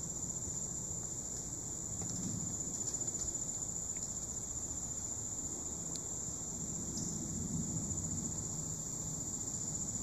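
Steady high-pitched insect chorus, a continuous shrill trill typical of crickets or katydids in woodland, with low rustling underneath and a few faint ticks.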